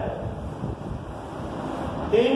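A blackboard duster wiping chalk off a blackboard, making an even rubbing hiss.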